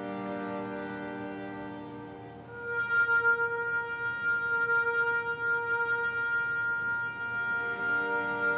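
A chamber orchestra plays slow, sustained notes: a low held chord, then about two and a half seconds in a louder high note enters, held steady over a sustained lower note.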